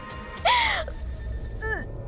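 A woman's gasping sob about half a second in, then a shorter whimpering sob near the end, both falling in pitch, over soft background music.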